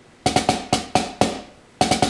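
Wooden drumsticks striking a rubber practice pad, playing backsticked single ratamacues: a quick cluster of strokes followed by a few evenly spaced ones, with the next figure starting near the end.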